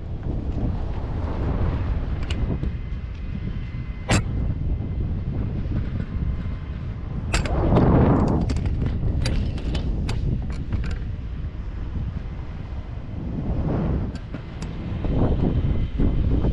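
Wind buffeting an action camera's microphone in the air under a parasail: a low rumble that swells in gusts, loudest about eight seconds in. Scattered sharp clicks come through, one about four seconds in and a cluster a few seconds later.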